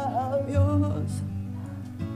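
Song playback: a sung vocal line over acoustic guitar, heard through a narrow EQ bell boosted high and swept across the low mids to hunt for muddy frequencies. The singing ends about a second in, leaving the guitar.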